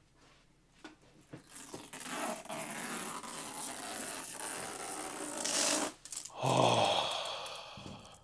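Protective plastic film being peeled off a monitor's screen: a steady rasping hiss that starts about two seconds in and lasts about four seconds, growing slightly louder before it stops. A shorter, louder noise follows about six and a half seconds in.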